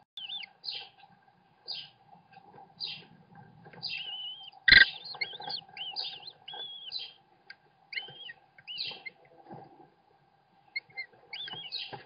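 American kestrel nestlings giving short, high begging calls, one after another, while a parent feeds them. There is one sharp knock a little before halfway through.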